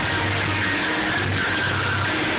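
Live gospel choir singing with band accompaniment, loud and distorted through a phone's microphone, over a held low bass note.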